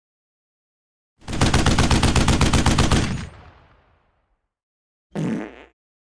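A machine-gun sound effect: a rapid burst of about ten shots a second lasting nearly two seconds, ringing out afterwards. About five seconds in comes a short fart sound effect.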